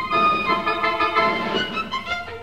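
Full orchestra playing modern classical music: a dense passage of many sustained high notes sounding together, from a 1956 radio broadcast recording.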